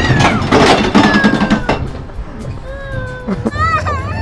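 A young girl crying and whimpering on a ride, over background music.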